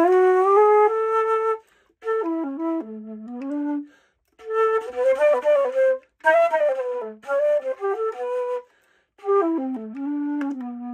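Schiller alto flute in G (a Jinbao-built instrument) played in short melodic phrases of runs and held notes in its low and middle register, with brief breaks for breath between phrases. It is played in heat of about a hundred degrees and sounds out of tune.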